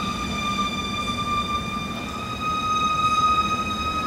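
Orchestral music holding one long, steady high note through the pause, with a low murmur underneath. Fuller music returns just after the end.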